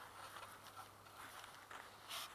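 Near silence: faint background hiss with a steady low hum and a few faint soft clicks.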